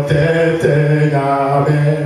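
A man singing a gospel song solo into a microphone, holding long, steady notes and sliding between them.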